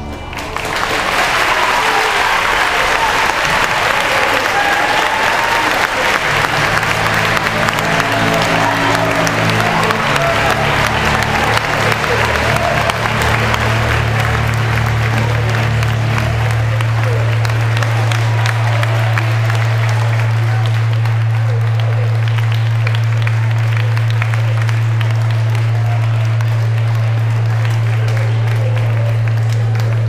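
Audience applauding and cheering, a dense clapping that starts just after the opening and runs on steadily, with a few voices calling out early on. A low held tone sits underneath, shifting a few times before settling into one steady note about halfway through.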